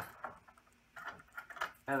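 Faint plastic clicks and a light jingle of a key ring as a dual-action fire alarm pull station is handled. A near-silent pause comes before the clicking and rattling resume in the second half.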